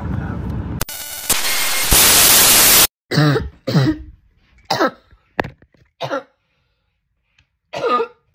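A very loud burst of noise lasting about a second and a half near the start. Then a person coughs and clears their throat in about five short bursts over three seconds.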